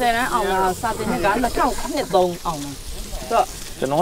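Conversation in Burmese, voices of a woman and men going on without a break, over a steady hiss of food sizzling on a charcoal hotpot grill.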